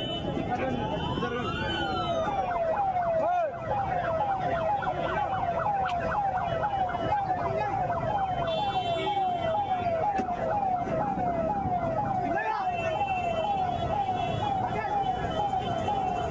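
Electronic siren of a police vehicle yelping: a rapid repeating sweep in pitch, about two a second, after one longer rising wail near the start, with crowd voices underneath.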